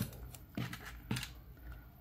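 Masking tape handled by hand: a sharp short sound right at the start, then two fainter brief ones about half a second apart, as small pieces are pulled from the roll and held.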